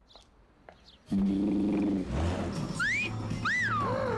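Near the end, a two-note wolf whistle: the first note sweeps up and the second rises and falls. A second or so earlier, a held low note sounds briefly.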